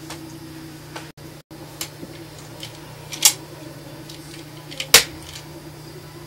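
A few sharp clicks over a steady low hum, the loudest click about five seconds in.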